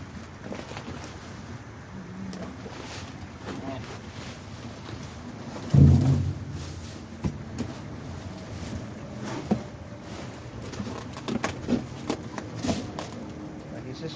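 Rummaging through trash inside a metal dumpster: plastic bags rustling and scattered knocks of items being moved, with one loud, short, low sound about six seconds in.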